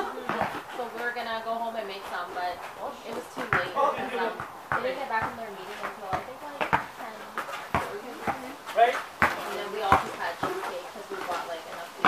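Indistinct voices talking, with a basketball bouncing sharply on a hard outdoor court at irregular intervals, about once a second.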